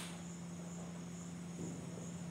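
Quiet room tone: a steady low hum under a faint, steady high-pitched drone.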